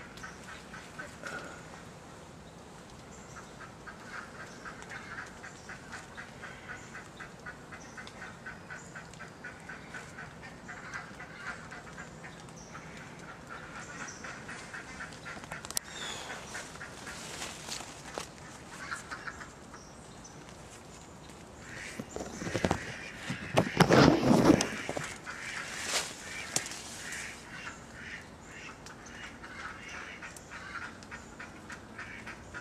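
Rapid, repeated animal calls in a steady series through much of the clip. Loud rustling and crackling of branches and leaves about three quarters of the way in.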